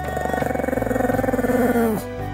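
Pomeranian dog giving a long, pulsing growling grumble, its pitch dropping just before it stops, over background music.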